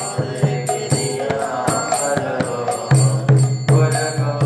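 Devotional chanting sung to music, a melodic voice over a steady beat of drum strokes, about two to three a second.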